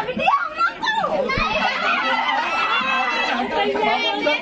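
A crowd of young men and women talking and calling out over one another in excited, overlapping chatter.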